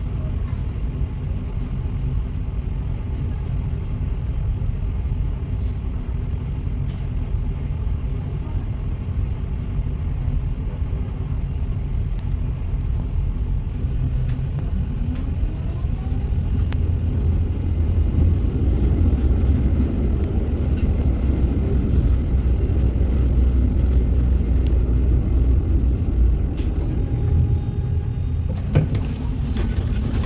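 Tram running noise heard from on board: a steady low rumble, then a rising whine about halfway through as it pulls away, with the rumble growing louder. Near the end there is a short run of sharp clicks and knocks.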